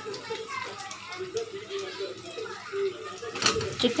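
Faint voices in the background, then a brief thump about three and a half seconds in as raw chicken pieces are dropped into the kadai of fried onions and masala.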